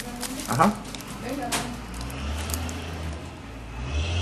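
Clear plastic wrap crinkling and crackling as a small plastic-wrapped toy accessory is handled, with a short rising voice-like sound about half a second in. A low steady hum comes in about halfway.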